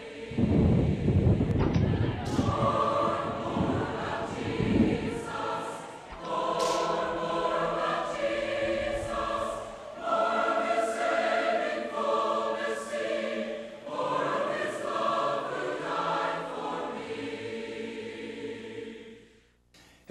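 A choir singing in long held phrases of about three to four seconds each, with low thudding under the first few seconds. The singing fades out near the end.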